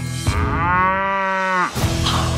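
A cow mooing once, a single long call of about a second and a half, over a steady low music bed.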